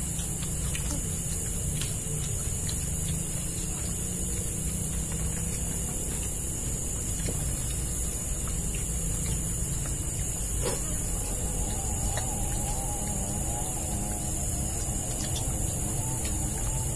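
Outdoor forest ambience: a steady high insect drone over a low rumble, with a few faint clicks and taps. A faint wavering sound joins about eleven seconds in.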